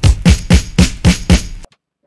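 Chopped drum-break samples triggered from an Akai MPC Studio's pads in a quick run of punchy hits. In poly mode each hit rings on over the next instead of cutting it off. The hits stop abruptly just before the end.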